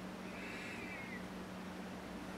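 A single short, high-pitched animal call, about a second long, falling in pitch at its end. Under it run a steady low hum and room hiss.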